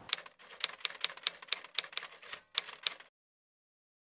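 Typewriter sound effect: a quick, uneven run of key clicks, about four a second, that cuts off suddenly about three seconds in.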